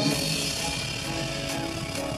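Live rock band playing through a concert PA, heard from the crowd: a held chord breaks off right at the start, leaving a deep low rumble and a wash of noise until pitched tones come back in near the end.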